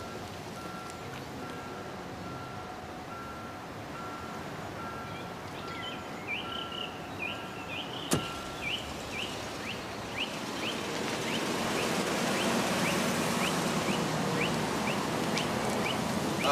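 Birds chirping in a steady, evenly repeating pattern. About eight seconds in, a car door shuts with one sharp knock, and from about ten seconds a rushing noise builds and holds, like a car moving off.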